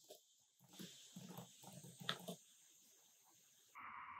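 Near silence, with a few faint short sounds in the first half.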